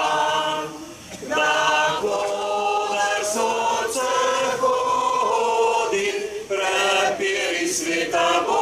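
A crowd singing an anthem together without accompaniment, led by a man's voice through a microphone, in sustained phrases with short breaks about a second in and after six seconds.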